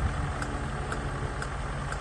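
Range Rover's 4.4-litre TDV8 diesel V8 idling steadily, with a light tick about twice a second.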